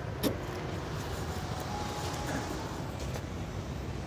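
A light click from a small hatchback's rear hatch just after it has been shut, followed by steady low background noise.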